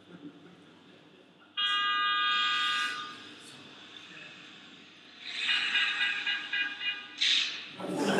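Car horn sounding a long, steady honk, then a second, broken honk a few seconds later, with a short sharp burst of noise near the end. It comes from a film clip played back over loudspeakers.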